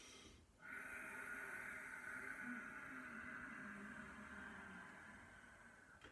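A man's long, slow exhale, starting about half a second in and fading gradually over about five seconds: the deliberately drawn-out out-breath of a qigong breathing movement.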